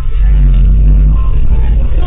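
Loud, steady low rumble of a bus engine and running gear, picked up inside the bus near the driver's seat while it drives with the front door open.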